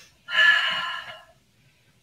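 A woman's breathy sigh, sudden at the start and fading out over about a second, as she reaches overhead in a stretch while cooling down from a walking workout.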